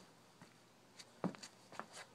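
Quiet room tone, then a quick run of four or five light knocks and clicks starting about a second in, the second one the loudest.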